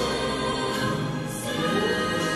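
Gospel church music: sustained chords with voices singing along.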